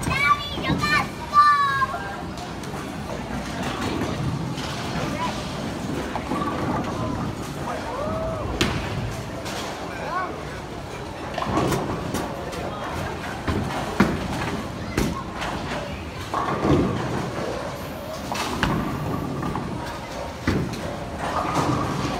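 Busy bowling alley: a steady low rumble with voices, a child's voice in the first couple of seconds, and sharp clatters of pins or balls every few seconds.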